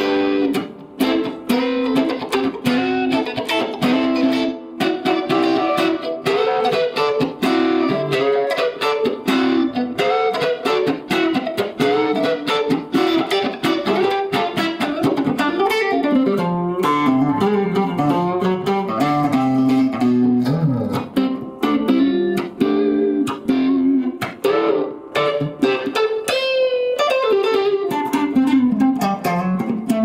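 Tom Anderson Cobra electric guitar played through an amplifier: a continuous improvised passage of quick single-note lines and chords, with string bends near the end.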